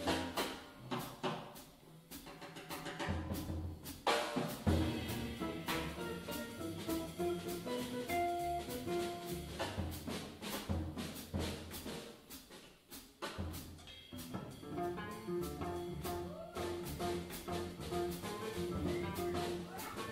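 Jazz trio playing live: hollow-body archtop electric guitar, upright double bass and drum kit with cymbals.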